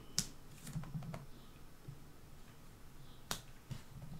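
Clear acrylic stamp block clicking and tapping as a small rubber stamp is inked on an ink pad and pressed onto card stock on a wooden table. Two sharp clicks, one just after the start and one about three seconds in, with a few fainter taps between.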